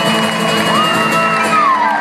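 Live band of acoustic guitars and keyboard holding the song's closing chord, with audience members whooping over it.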